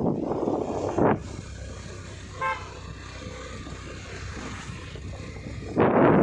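A vehicle horn gives one short toot about two and a half seconds in, over the steady low running of the vehicle and road noise while riding. There are brief rushes of wind on the microphone about a second in and again near the end.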